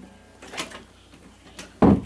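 Faint handling noises, then a single loud thump near the end as a guitar is picked up and knocks against something.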